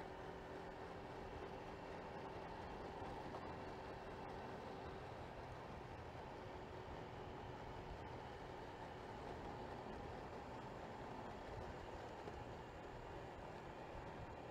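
Honda Vario 125 scooter cruising at a steady speed: its single-cylinder engine running under the rush of wind and road noise, steady and fairly quiet.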